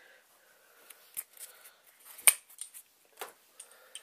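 Hands handling small aluminum RC stub axles in their foam-lined packaging: faint rustling with a few sharp clicks, the loudest about two seconds in.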